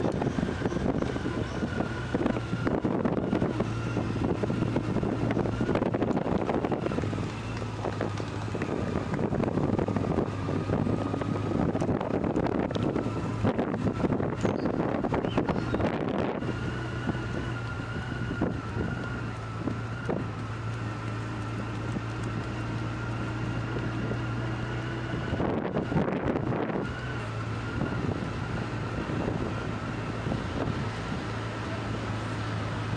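Motorcycle engine running at low road speed, a steady low hum with a faint higher whine over it, with wind rushing over the microphone in repeated gusts.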